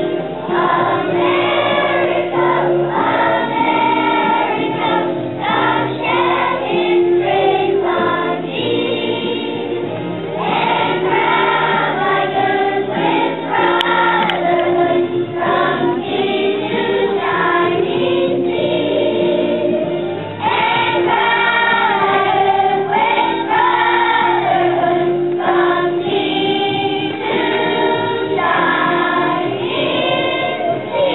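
Elementary school children's choir singing.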